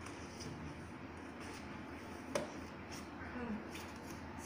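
Faint handling sounds of books and toys being moved about in an open desk drawer, with one sharp click a little past two seconds in.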